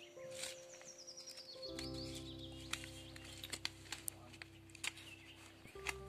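Faint small clicks and rustles of a paper seed packet being handled as zinnia seeds are tipped out onto a hand. A faint steady hum of several held tones comes in about two seconds in.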